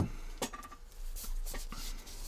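A few light clicks and soft rubs as a steel wristwatch is handled and set down on a mat, the sharpest click about half a second in.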